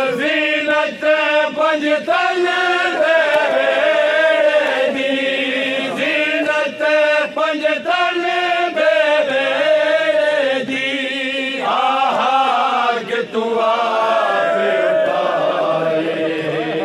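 A group of men chanting a noha, a Shia lament, together in chorus without instruments, holding long, wavering notes.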